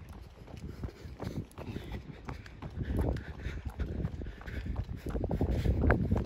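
Running footsteps on an asphalt path, a quick steady rhythm of about three steps a second, with wind rumbling on the microphone that grows louder near the end.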